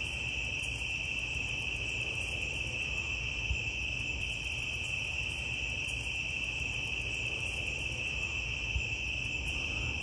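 A chorus of crickets making one continuous, even high-pitched trill, with a faint low rumble underneath.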